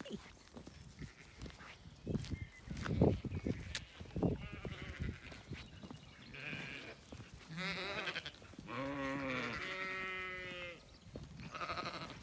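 Zwartbles sheep bleating: a short bleat, then a long quavering bleat of about two seconds, and another starting near the end. A few low thumps come before the bleats.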